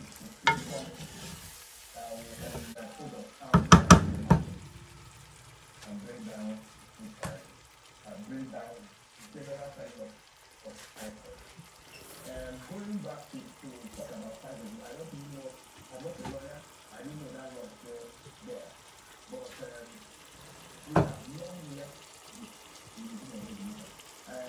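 Egusi (ground melon seed) and stockfish frying in palm oil in a pot, stirred with a wooden spoon: a steady sizzle and stir. A cluster of loud sharp knocks about four seconds in, and a single knock three seconds before the end.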